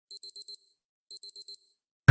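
Alarm clock going off: two bursts of four quick, high-pitched beeps about a second apart.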